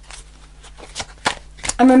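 A deck of oracle cards being shuffled by hand: a soft papery rustle broken by a few sharp card snaps.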